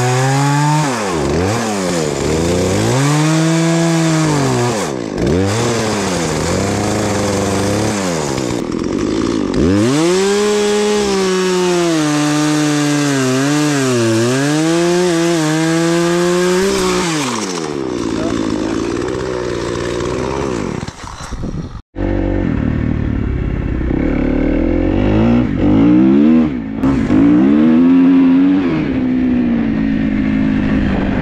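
Gas chainsaw revving up and falling back again and again as it cuts through fallen branches. About 22 seconds in the sound cuts off suddenly, and an off-road vehicle engine takes over, running with its pitch rising and falling.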